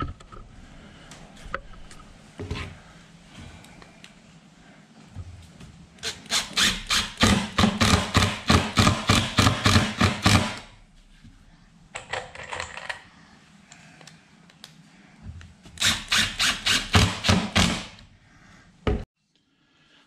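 Makita cordless impact driver hammering as it drives screws into hardwood, in a long burst about six seconds in and a shorter one later.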